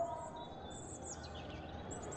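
Birds chirping faintly in the background: a few short, high chirps from about half a second in, and again near the end.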